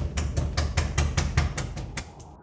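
A fist banging rapidly and hard on a wooden door, about seven even blows a second.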